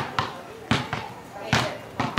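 Four sharp knocks at uneven intervals, with a short ring after each; the first two come close together.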